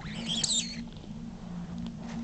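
A dachshund giving one short, high-pitched whine that rises and then falls, over a steady low hum.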